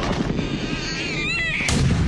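A dense rumbling crackle like gunfire and shelling, with a wavering high wail in the middle and a sudden loud blast near the end.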